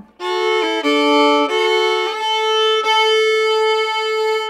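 Fiddle playing a slow waltz phrase in double stops: a few short notes on the D string under a steady open-A drone, then from about two seconds in a long held note where the fourth-finger A on the D string sounds together with the open A, slid into with a very small slide to make it grittier.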